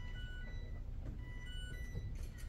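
Quiet room tone: a steady low rumble with faint, brief high-pitched tones scattered through it.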